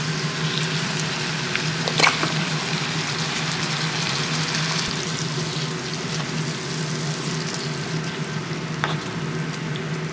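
Onions and a minced mixture sizzling in a frying pan while a wooden spoon stirs them, with a steady low hum underneath. There is a sharp knock about two seconds in and a lighter one near the end.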